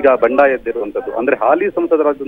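Speech only: a male reporter talking in Kannada, with no other sound.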